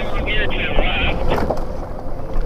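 Wind buffeting the microphone and the low rumble of an electric bike rolling over a muddy dirt trail, with speech over it.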